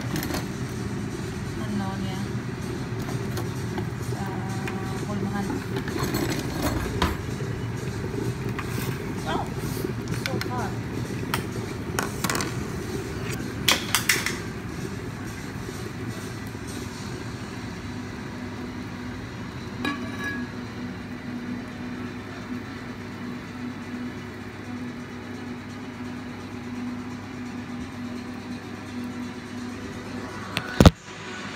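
Indistinct background voices over a steady low hum, with a few sharp clicks about twelve to fourteen seconds in.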